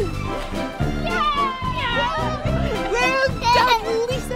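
Children and adults laughing and calling out over background music.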